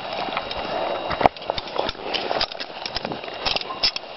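Shallow muddy water sloshing and scattered knocks as a steel leghold trap is handled and set down in it, with one sharp click about a second in.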